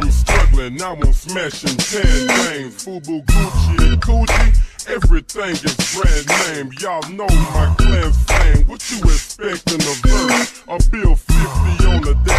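Slowed-and-chopped Houston hip hop: pitched-down rap vocals over a heavy bass beat. The bass drops out briefly twice.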